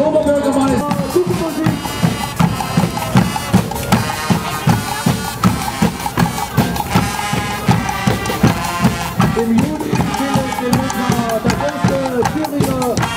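Carnival marching band playing: drums beat a steady march rhythm under sustained brass tones.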